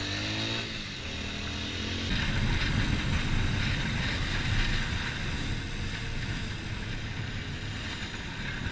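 Motorcycle engine running under way, its pitch rising in the first second. About two seconds in, the sound switches abruptly to a rougher engine rumble with wind rushing on the camera's microphone.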